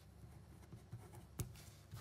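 Faint scratching of a ballpoint pen writing figures on paper, with a single sharp click about one and a half seconds in.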